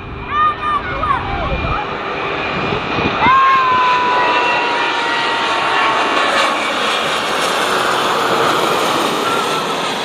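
Airbus A330-900neo's Rolls-Royce Trent 7000 jet engines passing low overhead on landing approach: a steady loud rush. About three seconds in, a high whine enters and slides slowly down in pitch.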